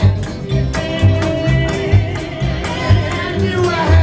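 A live acoustic roots band playing: strummed acoustic guitars over upright bass and drums, with a steady low beat about once a second.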